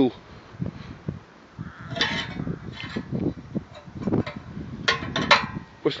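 Hinged steel lid on a rocket stove's wood-feed opening being worked by hand: a series of short metal clinks and knocks, bunched about two seconds in and again near the end.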